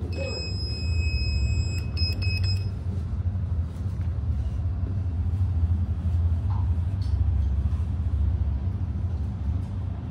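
Passenger lift car travelling: a steady low rumble throughout. Over it, a high electronic beep tone holds for the first couple of seconds, then breaks into a few short pulses and stops.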